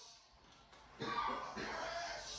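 Faint room tone, then a person's voice breaks in suddenly about a second in.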